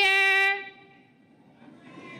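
A woman's voice drawing out a long call at one steady pitch, which stops about half a second in and dies away. A short, nearly quiet gap follows, and faint crowd noise returns near the end.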